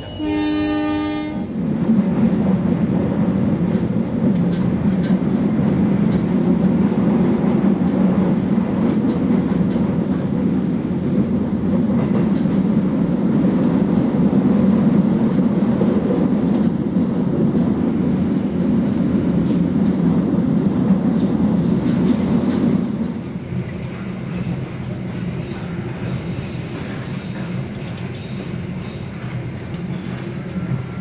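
Locomotive horn sounds once, briefly, at the start. The passenger train then runs with a loud, steady rumble of wheels on rail and scattered clacks. The rumble drops to a quieter level about 23 seconds in.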